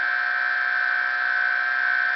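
Bedini-style pulse motor running at speed: a steady high-pitched whine.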